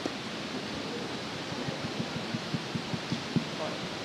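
Steady hiss of a hall's sound system with faint, indistinct speech and a run of soft low taps. An audience member's microphone is not carrying their voice.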